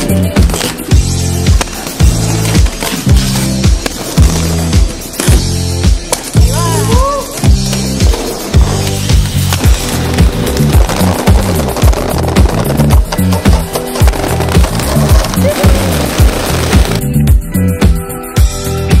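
Quad roller skate wheels rolling and clattering on concrete, over music with a steady pulsing bass line. The rolling noise stops near the end while the music carries on.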